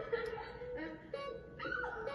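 The comedy sketch's soundtrack playing from the computer speakers: background music with a steady held note, and short high whiny voice-like sounds over it.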